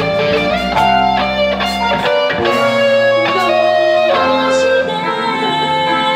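Live band playing an instrumental passage: electric guitar to the fore over keyboard and drums, with a steady beat of drum and cymbal hits.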